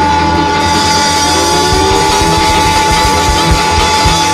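Live blues band playing: a long held high note rings over a metal-bodied resonator guitar, with drum beats underneath.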